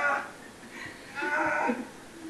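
A man's voice in two drawn-out cries, one right at the start and a longer one about a second in.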